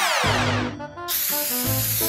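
Cartoon spray-paint can sound effect: a falling swoop of pitch as the can moves along. About a second in, a steady aerosol hiss starts as it sprays paint onto the plane's wheel. Children's music plays underneath.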